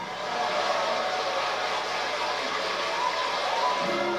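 Studio audience applauding and cheering just after a song ends, heard through a television's speaker.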